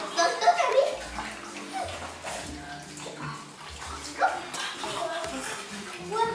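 Water splashing and slurping as an adult French bulldog laps from a bowl, with short high-pitched vocal sounds from the child or puppies over it, loudest in the first second.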